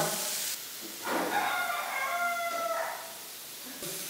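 A rooster crowing once: one drawn-out call of about two seconds, starting about a second in and dropping in pitch at the end.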